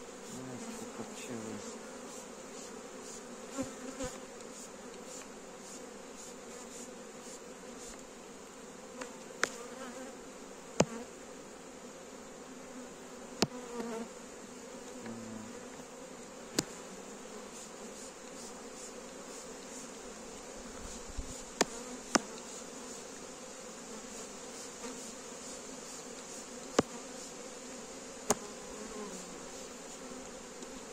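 A strong honeybee colony buzzing steadily from an open hive as its frames are handled, with about a dozen sharp wooden clicks and knocks scattered through from the frames and hive tool against the hive box.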